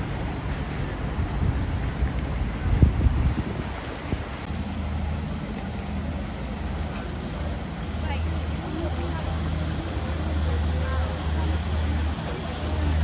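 Steady low drone of motorboat engines on the canal, with people talking faintly in the background. A brief loud rumble comes about three seconds in.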